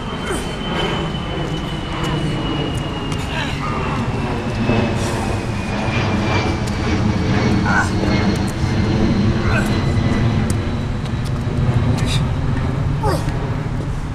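A steady low rumble with a slowly falling whine, like a passing vehicle, and several short sharp clanks of iron kettlebells set down on pavement during renegade rows.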